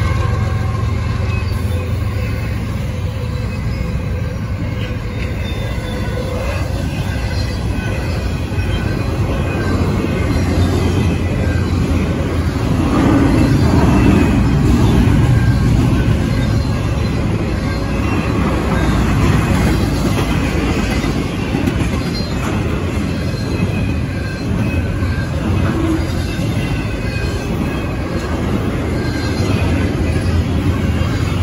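Double-stack intermodal freight train rolling past: a steady rumble and clatter of steel wheels on rail. A trailing diesel locomotive's engine drones at the start and fades as the container cars follow.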